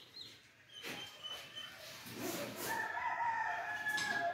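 A rooster crowing once: a long call of about two seconds that starts in the second half and is the loudest sound. A few faint short bird chirps come near the start.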